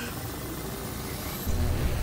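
A produced sound effect: a hissing whoosh with a faint rising whistle, then a loud deep rumble that swells in about a second and a half in.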